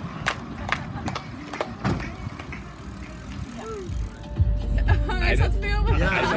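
Scattered hand clapping in the first couple of seconds. About four seconds in it gives way to a low, steady rumble inside a van, with voices over it near the end.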